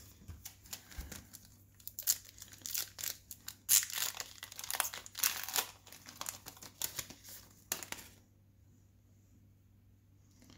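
A 2020 Topps Fire baseball card pack's shiny wrapper being handled and torn open by hand: a run of crackly crinkling and ripping that stops about eight seconds in.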